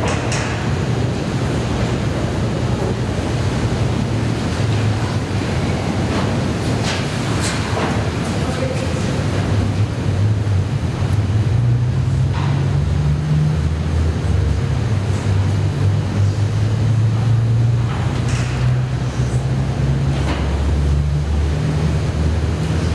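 A steady low rumble, uneven in strength, with a few faint knocks scattered through it.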